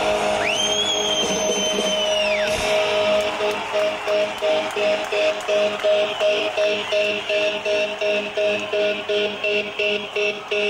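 Live punk band's amplified electric guitars holding sustained notes between songs. A high whistling tone rises, holds and falls away in the first two seconds. Then a steady pulse sets in, about twice a second.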